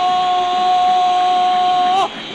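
A football commentator's long shouted goal cry, one high note held steady, rising slightly at the end and cutting off, over crowd noise.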